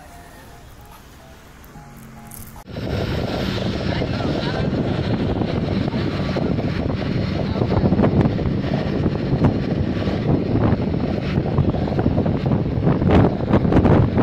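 Faint background music, then a sudden cut about three seconds in to loud wind buffeting the microphone and rushing water on a fast-moving parasailing tow boat.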